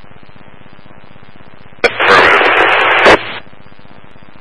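Police scanner radio: a low hiss, then about two seconds in a transmission keys up with a click, gives about a second of loud static with no clear words, and cuts off with another click.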